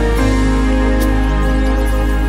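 Music: an instrumental stretch of a song, with sustained chords over a deep, steady bass and no voice.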